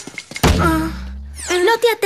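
Cartoon impact sound effect: a heavy thunk about half a second in, followed by a low boom that rings on and fades over about a second.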